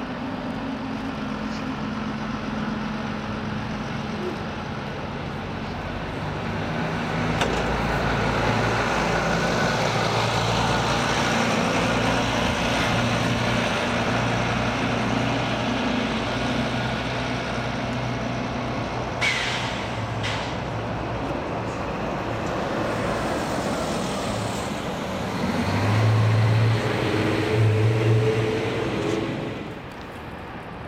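Diesel bus engines running and moving off, with one short air-brake hiss about two-thirds of the way through. The engine sound grows louder towards the end as a bus pulls away under power.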